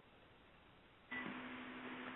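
Near silence, then about a second in a faint hiss with a steady low hum comes in: line noise from an open microphone on a call-in audio feed.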